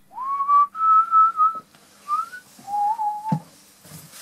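A person whistling a short tune: a note that swoops up and holds, a longer higher note, a brief rising note, then a lower wavering note. The last note cuts off with a knock.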